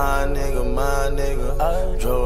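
Hip-hop beat playing without rapping: a heavy bass under a held, chant-like melodic line that moves between notes about every half second.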